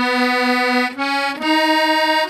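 Squeeze box (accordion) playing a slow tune, one reedy held note at a time, the melody stepping up in pitch in the second half.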